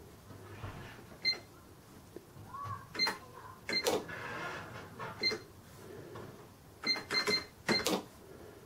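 Keys on a Sam4S NR-510 cash register's raised keyboard being pressed one at a time, each press giving a click and a short electronic beep. There are a few scattered presses, then a quick run of four near the end.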